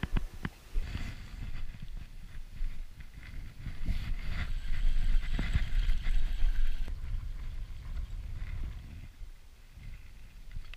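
Wind buffeting and handling noise on a head-mounted action camera while a spinning reel is cranked to bring in a hooked fish, with scattered clicks and knocks from the rod and reel.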